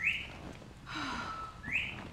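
A whistled call: a held steady note, then a quick upward swoop, heard twice, about a second and a half apart.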